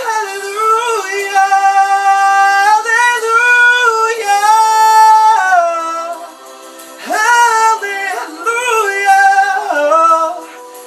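A man singing unaccompanied, holding long notes that slide from one pitch to the next, with a short pause for breath about six seconds in before he sings on.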